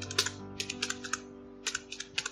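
Computer keyboard typing: about a dozen quick key clicks in short runs, with a brief pause midway, over background music.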